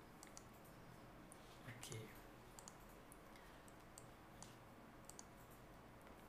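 Faint computer-mouse clicks, a dozen or so scattered irregularly over near-silent room tone.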